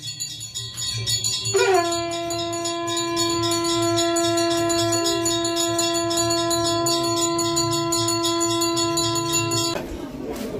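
A conch shell (shankh) blown in one long, steady note that starts about two seconds in, rises briefly into pitch and holds until just before the end, where it stops. Under it a small temple bell rings rapidly and continuously.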